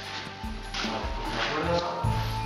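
Background music with sustained held notes.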